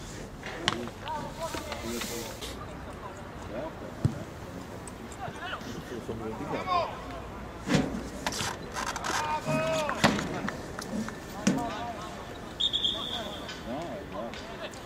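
Players shouting across a football pitch, with a few sharp thuds of the ball being struck, then a short blast on the referee's whistle near the end that stops play, for a handball.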